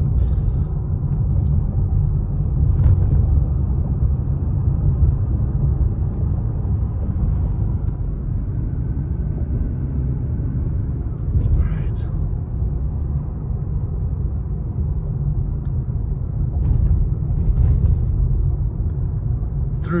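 Steady low rumble of a car driving on a paved road, heard from inside the cabin: engine and tyre noise, with a brief click near the middle.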